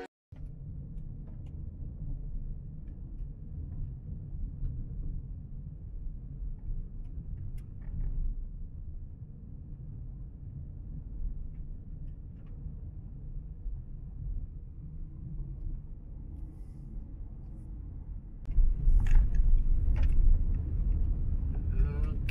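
Car driving on a gravel road, heard from inside the cabin: a steady low tyre-and-road rumble with a few faint ticks. The rumble grows clearly louder and rougher about three-quarters of the way through.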